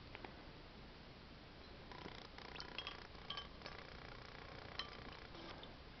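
Faint handling sounds of a glass pitcher of water and a compact fluorescent bulb being put into it, with a scatter of small sharp clinks from about two seconds in.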